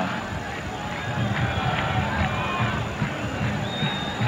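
Stadium crowd noise from an old football TV broadcast: a steady mass of crowd sound with a few short high tones, like whistles, about halfway through.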